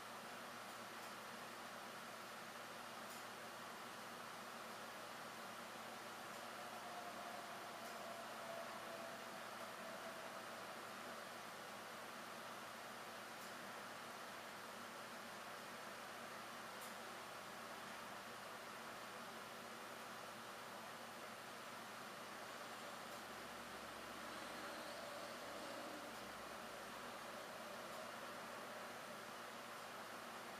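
Faint steady hiss of room tone; no engine is running.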